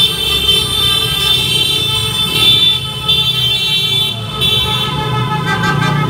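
Many horns blowing at once in long, overlapping blasts, briefly thinning about four seconds in: the New Year's honking and horn-blowing racket of a street.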